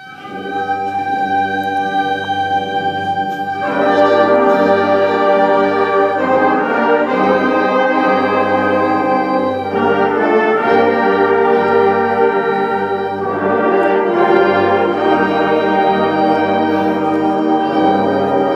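High school concert band playing the slow opening section of a piece in held, sustained chords. The sound starts at once and swells as more of the band joins about three and a half seconds in, with the chords shifting every few seconds.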